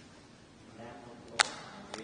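Faint murmured voices in a large, echoing church, cut by one sharp, loud click about one and a half seconds in and a fainter click half a second later.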